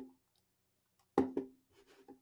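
Two sharp clicks about a fifth of a second apart, a bit over a second in, after a fainter tap at the start.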